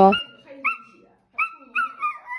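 Alaskan Malamute puppy giving several short, high whines in quick succession.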